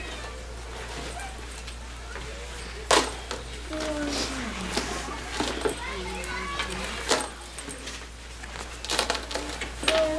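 Quiet children's chatter with the clatter and rattle of plastic rekenreks (bead counting frames) being handed out and handled, with a few sharp clicks.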